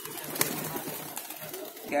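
A flock of domestic pigeons cooing, with a single sharp click about half a second in.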